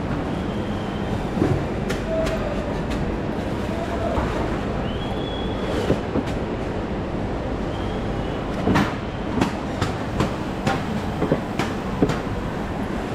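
Market hall ambience: a steady din with scattered clacks and knocks, more of them in the second half, and a few brief high squeaks.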